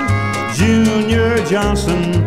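Instrumental passage of a 1960s country band recording from a mono vinyl LP: guitar with sliding notes over a steady bass line, with no singing.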